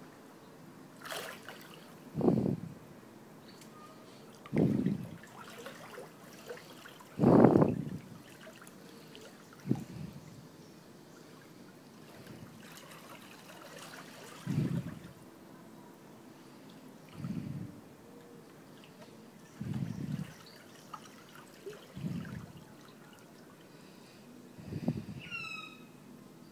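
Pool water sloshing and lapping around two bodies as a floating person is drawn slowly through it, in gentle surges every two to three seconds. A short rising chirp sounds near the end.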